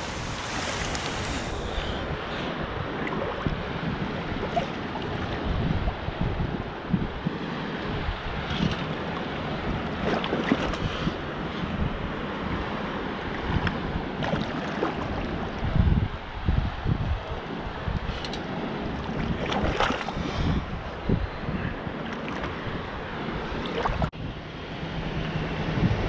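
Wind buffeting the microphone over choppy shallow water washing and sloshing, with a few brief louder splashes.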